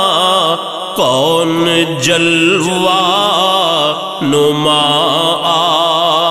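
A naat sung by voices alone, in long, wavering held notes without clear words; the phrases break off and start again about one, two and four seconds in.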